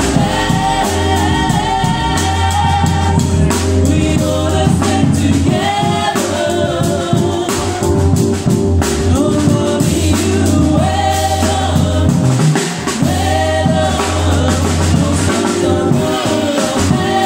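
Live small-combo jazz: a woman sings over a drum kit played with sticks and a keyboard, with a steady low bass line underneath.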